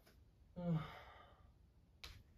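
A man's single short voiced sigh about half a second in, trailing off.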